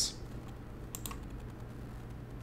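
A couple of faint, quick computer clicks about a second in, over a low steady hum.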